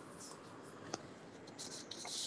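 Faint steady hiss and room noise from an open microphone on a video call, with light rustling and a single short click about a second in.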